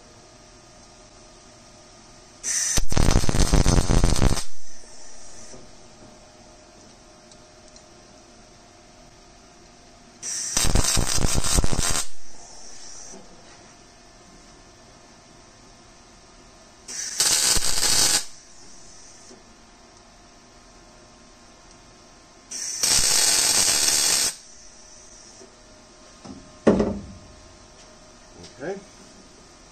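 Wire-feed (MIG) welder laying four short tack welds, each a crackling arc burst of about two seconds, spaced several seconds apart, tacking a steel tube of the truss in place. A couple of short knocks follow near the end.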